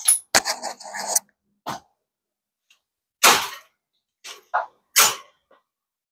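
Short knocks and clatters of tools and metal being handled on a workbench: about six separate hits, the loudest about three seconds in.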